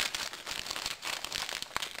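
Clear plastic bag crinkling as it is handled, with small clicks of the resin kit parts inside shifting against one another.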